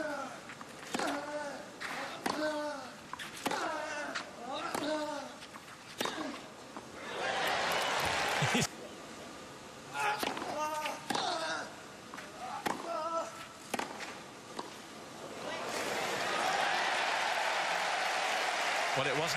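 Two tennis points on clay. First a rally of racket strikes on the ball, each with a player's grunt, about a second apart, and a burst of crowd cheering about seven seconds in that stops abruptly. Then a short point of serve and a few shots, and crowd cheering and applause that swell near the end.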